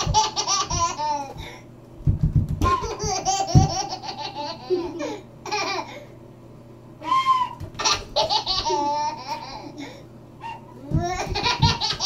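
A toddler giggling in about five separate bouts of quick, choppy laughter. Dull thumps of bare feet dancing on the floor come in between.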